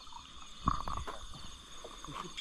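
Two or three quick knocks about two-thirds of a second in, over steady high-pitched chirring of night insects.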